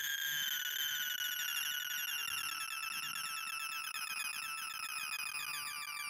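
Sorting-algorithm sonification from ArrayVisualizer: a rapid, unbroken stream of short synthesized beeps as Grailsort sorts 2,048 numbers, with each beep's pitch set by the value being read or written. The beeps run in fast repeating rising chirps, and the whole stream drifts slowly lower in pitch.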